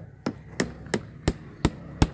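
Small hammer knocking repeatedly on a lotus-fertilizer tablet to crack it: about five sharp, evenly spaced knocks, roughly three a second.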